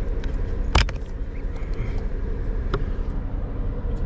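A sharp plastic click a little under a second in as the blower motor's wiring connector is pulled apart, with a few faint ticks of handling later. Under it is a steady low mechanical hum.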